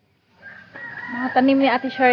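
Rooster crowing: a loud, drawn-out crow that starts about half a second in.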